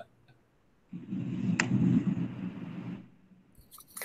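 Soft rustling and handling noise picked up by a video-call microphone for about two seconds, with one sharp click in the middle.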